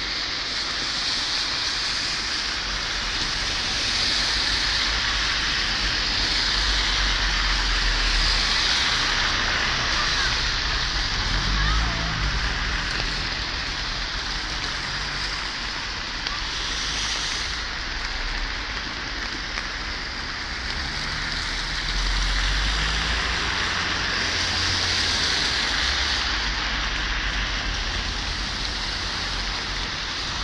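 The Mulde river in flood, running high and fast, gives a steady rushing noise. Low rumbles of wind on the microphone come and go, strongest around a third of the way in and again past two thirds.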